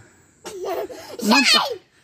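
A young child's giggling, followed about a second in by a short spoken "não".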